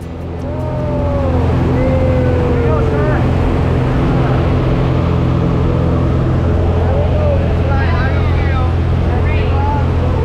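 Light aircraft's piston engine and propeller running loud and steady, heard inside the cabin; it swells over the first second, then holds an even drone. Voices call out over it a few times.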